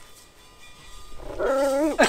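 A small dog whining with a wavering pitch for under a second near the end.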